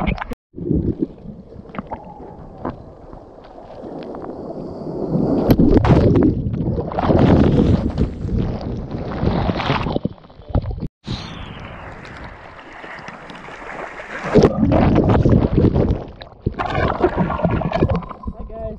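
Shorebreak whitewater rushing and churning around a GoPro at water level, swelling loudly twice as waves wash over it. The sound cuts out briefly twice, once near the start and once about eleven seconds in.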